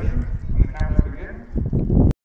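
People's voices, one briefly raised and pitched, over wind rumbling on the microphone.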